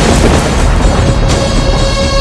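Film-trailer score and sound design: a loud, deep rumbling boom with a dense noisy wash over it. About a second in, a sustained musical tone is held over the rumble.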